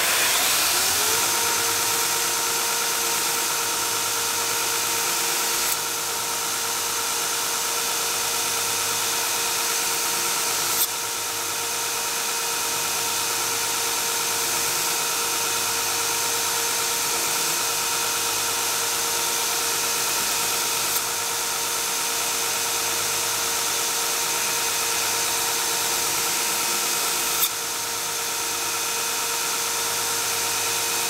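Belt grinder spinning up to speed over about a second, then running steadily with a whine and a hiss while the steel tang of a knife is ground on a 120-grit belt over a soft silicone contact wheel.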